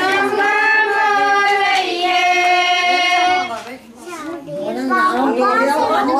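Women's voices singing a Punjabi suhag wedding folk song with no instruments, drawing out long held notes. The singing breaks off briefly about four seconds in, then the voices pick up again.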